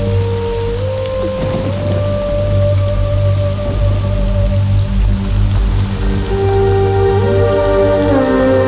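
Film soundtrack of steady rain falling, under slow, sustained music notes that shift pitch a few times over a low steady drone.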